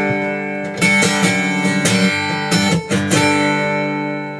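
Acoustic guitar strummed: a few chords struck about a second apart, each left to ring out.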